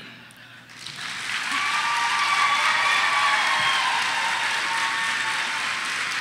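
Audience applauding at the end of a talk, swelling about a second in and then holding steady.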